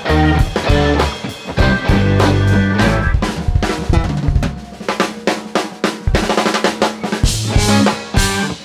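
Live band with drum kit, electric guitars and keyboards playing an instrumental passage. About three seconds in the bass drops away, leaving mostly drums with quick hits, and the full band comes back in near the end.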